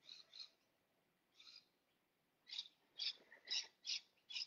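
Faint bird calls: short, high chirps, a few scattered at first, then a run of them about twice a second.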